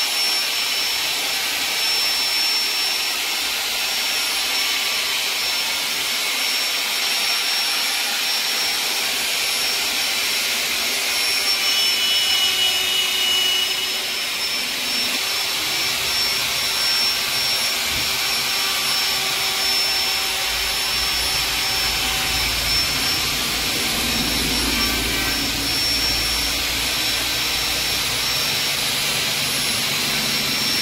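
A steady high-pitched hiss with a thin steady whistle above it; a low rumble joins it about halfway through.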